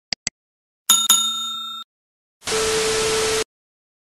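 Sound effects for a subscribe-button animation: two quick clicks, then a bell-like ding that rings for about a second. Near the end comes about a second of even hiss with a steady tone under it, starting and stopping abruptly.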